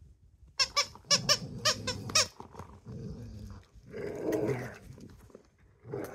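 A dog's squeaky plush toy squeaked about seven times in quick succession as the Rottweiler chews it, then a short rough growl from the dog about four seconds in.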